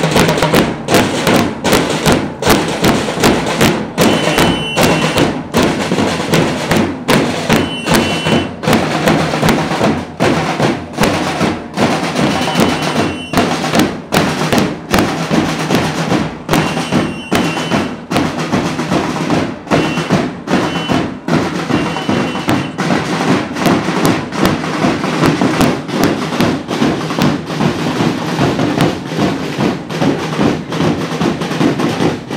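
Marching drum group playing a steady beat on bass drums and snare drums. A whistle sounds in short double blasts every few seconds.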